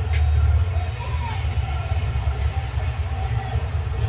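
A low, steady rumble, strongest in the first second.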